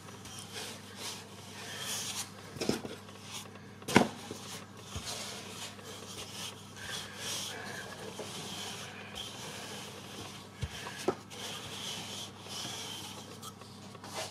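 Wooden rolling pin rolling yeast dough out on a floured work surface: repeated soft rubbing strokes, with a few sharp knocks, the loudest about four seconds in.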